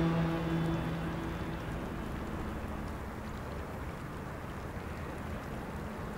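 A held low note of the drama's background score fades out over the first two seconds, leaving a steady faint hiss of background ambience.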